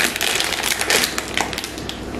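A thin plastic bag of jelly beans crinkling as a hand digs in to pick out a bean: a quick run of small crackles, a little quieter toward the end.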